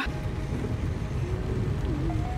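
Inside a car driving through heavy rain: a steady low rumble of road and wind noise.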